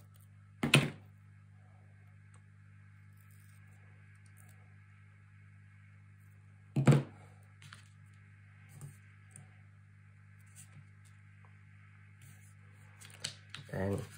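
Steady low hum in a quiet room, broken by a single sharp snip about a second in as scissors cut a strip of double-sided tape, and a thunk around seven seconds as the scissors are set down on the wooden table. A few faint taps follow as fingers press the tape onto the cardstock.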